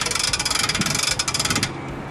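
Hand-cranked mast winch clicking rapidly as it is wound, raising the light tower's telescoping mast. The clicking stops shortly before the end, when the mast reaches its stop mark.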